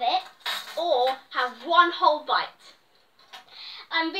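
Children's voices talking, with a short noisy burst about half a second in.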